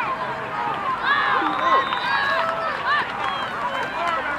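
Many voices of a sideline crowd shouting and cheering over one another without a break as a youth football play is run.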